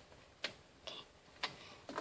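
A few light clicks of small plastic Minecraft mini figures being handled and set on a table, about half a second apart.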